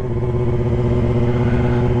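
2017 Yamaha R6's inline-four engine running at a steady low speed, its note holding one even pitch, heard from the rider's helmet microphone.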